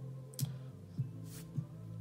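Music playing at low volume from a loudspeaker with no amplifier wires connected. The signal reaches it only through magnetic crosstalk from one crossover inductor into another, steel-core one. A steady bass line is heard with a few beat hits.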